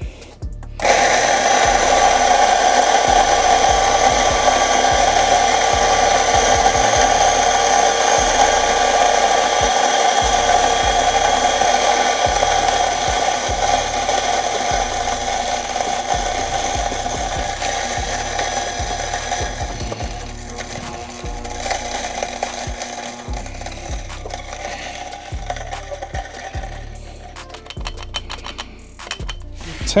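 Electric single-dose coffee grinder grinding an 18 g dose of espresso beans: a steady motor whine starts about a second in and gradually thins and quietens past the middle as the dose runs through the burrs. It dies away a few seconds before the end, followed by a few short knocks.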